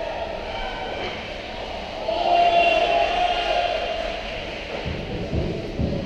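Indoor ice hockey rink during play: a steady arena din, with a long pitched sound about two seconds in that is the loudest part, and a few dull thuds near the end.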